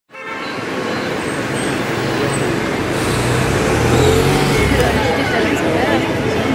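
City street traffic: a steady wash of road noise with a car passing, its low engine rumble swelling about halfway through, mixed with the chatter of a waiting crowd.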